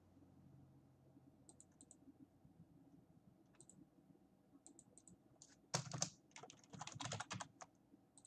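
Typing on a computer keyboard: a few faint scattered key clicks, then a quick run of louder keystrokes in the last couple of seconds.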